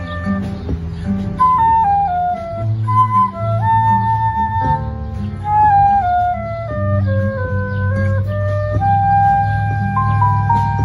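Concert flute playing a bossa nova melody line in phrases of stepping, held notes, over electric bass and guitar accompaniment.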